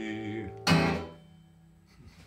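Acoustic guitar ending a song: a held chord fades out, then one loud final strum about two-thirds of a second in rings briefly and dies away within about half a second.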